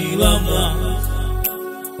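A Romani-language Christian praise song: a sung vocal line over a backing with a held bass note. The voice and bass thin out about a second and a half in, just before the next sung phrase.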